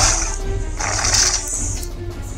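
Game music from an augmented-reality card battle app, with a pulsing bass beat and a short burst of noisy attack sound effect about a second in.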